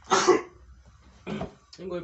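A man coughing harshly, a loud single cough just after the start and a second, shorter one about a second later.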